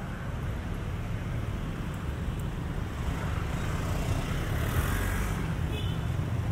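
Street traffic: motorcycles and cars running and passing, a steady low rumble that grows louder a few seconds in.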